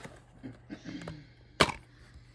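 A plastic DVD case being handled and opened, with light rubbing and then one sharp snap about one and a half seconds in as the case pops open.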